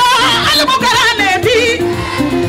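Music with a high singing voice whose pitch wavers in quick ornaments, over held lower instrumental notes.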